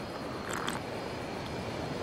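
A man sipping coffee from a thermos cup: two short, soft sips about half a second in, over a steady background hiss.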